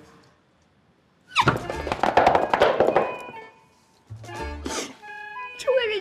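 After a moment of near silence, a woman gives a loud, excited squeal of delight, muffled behind her hand, for about two seconds. Background music comes in after it.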